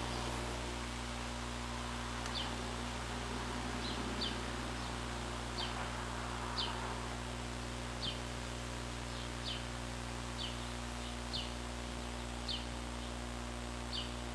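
A small bird calling: short, high, falling chirps about once every second or so, over a steady low hum.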